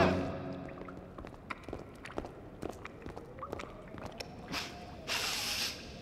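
Sewer ambience in a cartoon soundtrack: scattered drips and small squelching clicks over a faint held tone, as the chanting dies away. A short hiss of noise comes about five seconds in.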